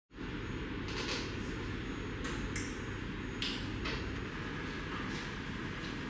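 A steady low background hum with several brief, soft swishing sounds scattered through it.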